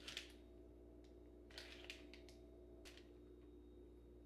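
Near silence: faint room hum with a few soft, brief rustles of a plastic cheese package as cheddar slices are taken out and laid on bread.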